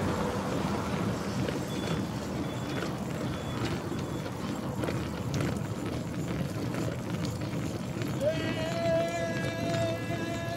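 Steady wind rush on the microphone mixed with road noise from a road bike riding fast along a highway shoulder. Near the end a long, steady pitched tone sounds for about two seconds.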